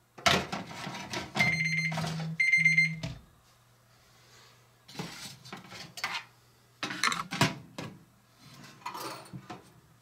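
Small metal baking trays and pans clattering against the rack and door of a vintage tin toy oven as they are swapped and the door is shut. Two electronic beeps, a long one then a short one, sound between about one and a half and three seconds in, over a faint steady hum.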